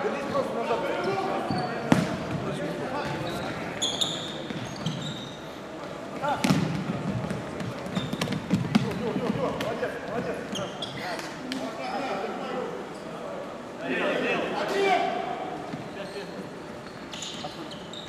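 Futsal ball kicked and bouncing on a wooden sports-hall floor, a few sharp kicks standing out, about two seconds in and again about six seconds in, amid players' shouts echoing in the large hall.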